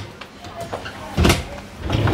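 Pull-out bed section of a sofa bed being pushed shut into the sofa base: a short knock about a second in, then a sliding rumble that starts near the end as it rolls closed.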